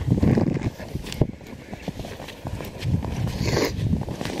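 Booted footsteps crunching through deep snow, about half a dozen steps in a row.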